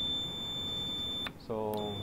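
Fluke 374 clamp meter's continuity beeper giving a steady high beep while its test probes are touched together and it reads zero ohms, which shows the leads are good. The beep stops about a second and a quarter in, then sounds again briefly near the end.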